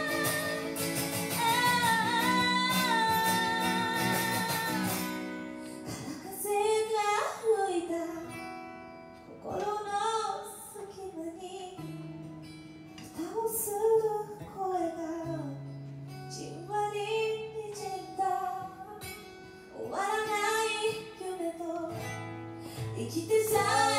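A female voice singing a slow ballad to a strummed acoustic guitar, performed live. A long note held with vibrato comes first, then shorter sung phrases with brief breaths between them.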